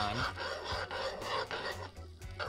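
Metal spoon scraping and stirring around the bottom of a metal saucepan, a continuous gritty rasping through melting butter and brown sugar whose sugar has not yet dissolved.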